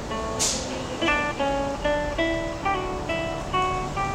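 Solo acoustic guitar, fingerpicked: a melodic line of single plucked notes, a few a second, now and then two notes sounding together.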